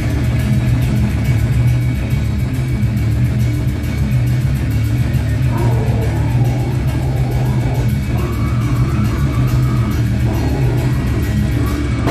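A metal band playing live: heavy distorted guitars and bass over fast drumming, with vocals coming in about halfway through.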